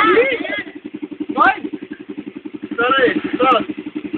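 Dirt bike engine running steadily at low speed with a fast, even putter, the bike picking its way along a narrow trail. Voices call out briefly over it near the start, about a second and a half in, and again toward the end.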